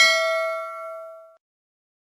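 A bell-chime notification sound effect, struck once right at the start, ringing with several tones at once and fading away within about a second and a half.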